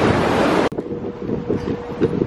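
Water rushing over the concrete weirs of a fish ladder, which cuts off abruptly under a second in. Wind noise on the microphone and a steady hum follow.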